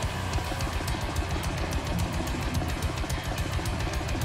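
Metal band playing live: distorted electric guitars and drums, with rapid, evenly spaced drum hits about eight a second.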